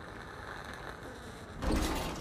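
A low, steady room hum, then, about one and a half seconds in, a sudden much louder deep knock and rumble that carries on.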